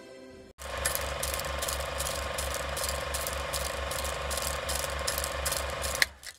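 Film projector sound effect: a steady, rhythmic mechanical clatter of about five beats a second, starting about half a second in.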